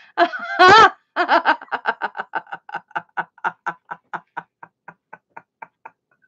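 A woman laughing heartily: a couple of loud voiced whoops, then a long run of quick, even "ha-ha" pulses, about five a second, that slowly fade out near the end.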